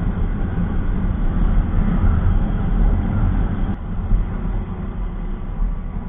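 Wind rumbling over the camera microphone of a moving Hero Passion Plus motorcycle, with the small single-cylinder engine and tyre noise underneath.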